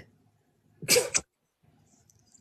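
A single short, sharp burst of a person's voice, about a second in, between stretches of near silence.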